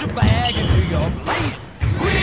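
A basketball thudding on a sports-hall floor during a full-court game, with players' voices and music mixed in.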